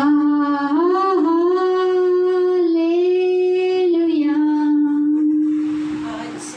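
A woman singing one long held note into a microphone in a small room. The pitch lifts slightly about a second in, eases down near four seconds, and the note fades out near the end.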